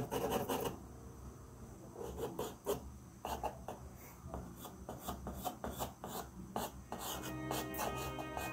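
Graphite pencil scratching across drawing paper in quick, repeated hatching strokes. Background music is heard at the start and comes back in near the end.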